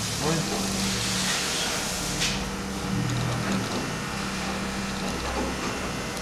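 Low steady hum over a background hiss, with one light click a little over two seconds in.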